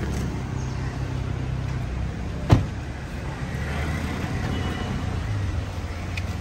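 An SUV's door slams shut once, about two and a half seconds in, over the steady low hum of an idling car engine and street traffic.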